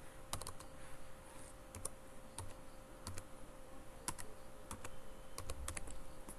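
Typing on a computer keyboard: faint, irregular key clicks over a faint steady hum.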